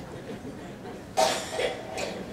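A person coughing close to the microphone: a sudden loud cough a little over a second in, with a second, weaker cough just after it.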